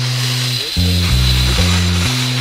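Instrumental hip-hop beat with no vocals: a deep bass line stepping between notes, under a steady hiss-like wash.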